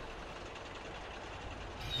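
Faint, steady hiss from a stationary steam locomotive, growing a little louder near the end.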